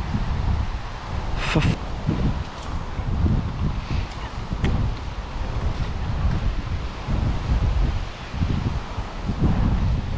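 Wind buffeting the microphone, a gusty low rumble, with a couple of sharp clicks about a second and a half in and another fainter one near the middle.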